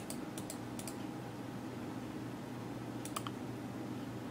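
A few light clicks of a computer mouse button in the first second and a quick pair about three seconds in, over a steady low hum of room tone.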